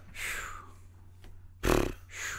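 A man sighs, a long breath out close to the microphone. Near the end comes a short, loud puff of breath that hits the microphone.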